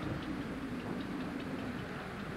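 Goodyear blimp's engines running with a steady hum that sinks slightly in pitch, with faint ticking over it.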